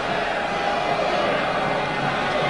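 Stadium crowd noise: a steady, even din from the stands.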